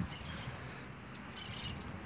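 Low background noise with two faint, brief high chirps, one near the start and one about one and a half seconds in.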